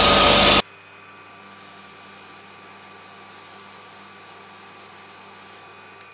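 A Dyson vacuum runs loudly for about half a second, then cuts off abruptly, giving way to the quieter steady whir of a bench belt sander with vacuum dust extraction as the tip of a golf shaft is sanded to strip its paint before gluing. The sound fades out near the end.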